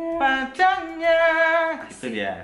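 Pop-ballad singing in long held notes, a couple of sustained notes within two seconds, with no instrument clearly standing out.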